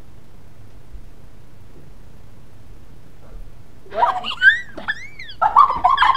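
Steady low room and handling noise for about four seconds, then a burst of high voice sounds sliding up and down in pitch.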